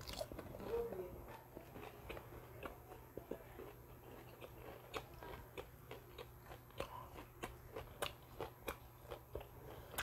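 Chewing a mouthful of crispy okoy (small-shrimp and carrot fritter): a bite at the start, then a steady run of small crunches and mouth clicks.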